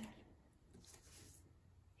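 Near silence: room tone, with a faint brief rustle about a second in.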